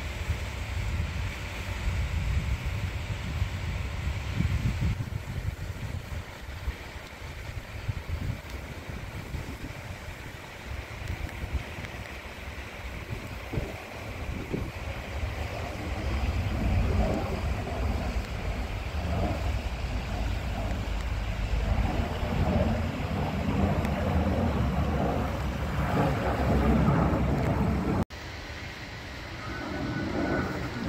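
Airbus A319 twin-engine jet airliner passing overhead on approach, its engine noise growing louder over the second half, with wind buffeting the microphone throughout. The sound cuts off abruptly near the end.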